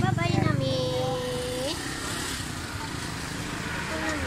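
People's voices, one drawn out into a long held call that rises at its end, over the low running of a small engine that fades out early on.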